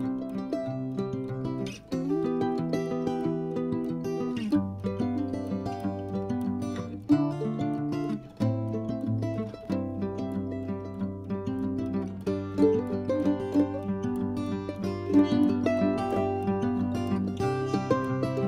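Instrumental background music with plucked strings playing a steady run of notes.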